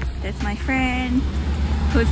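A woman talking briefly, over a steady low rumble.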